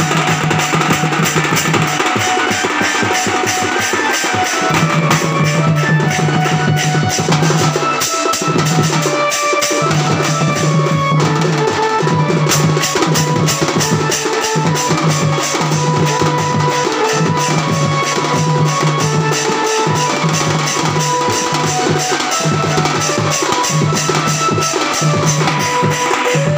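Children's improvised percussion: a small drum beaten rapidly with two sticks and a pair of steel plates clashed together like cymbals, in a fast steady rhythm. A low held tone and a stepping melody sound over the beat.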